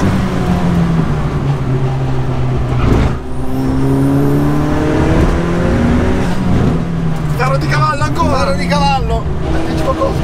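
Dallara Stradale's turbocharged 2.3-litre four-cylinder engine heard from inside the cabin, pulling hard on track. Its note dips briefly about three seconds in, then climbs steadily again. A voice cuts in near the end.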